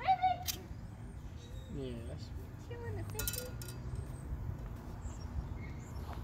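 A few short wordless vocal sounds from people, a brief high exclamation right at the start and low hums or murmurs around the middle, over faint outdoor background noise.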